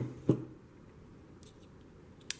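Two short knocks near the start, as of a hard object set down on a bench, followed by a few faint clicks about a second and a half in.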